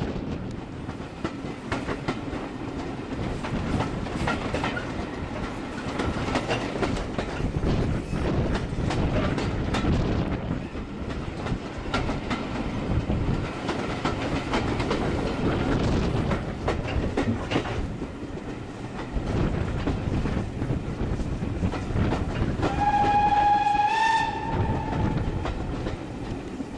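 Railway carriage running at speed, heard at an open window: wheels clattering over the rail joints with wind rush. Near the end the locomotive's whistle sounds once for about a second and a half, a single note that rises slightly just before it stops.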